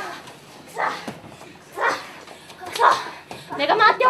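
Short, sharp shouts from human voices, about four of them roughly a second apart; the last rises in pitch.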